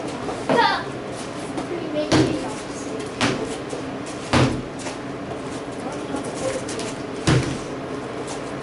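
Four sharp thuds, irregularly spaced a second or more apart, from a person performing a Chinese broadsword form: the sword movements and foot stamps on a padded floor.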